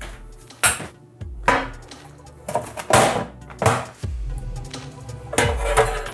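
Metal cake pan and serving tray knocking and clattering on a wooden chopping board as a cake is flipped out of the pan, about five separate knocks over several seconds.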